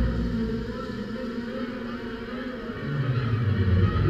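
Low rumble of aerial fireworks bursts, fading after the first second and building again near the end, with the show's music faint underneath.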